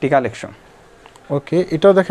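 A man's voice speaking in short phrases, with a pause of under a second in the middle.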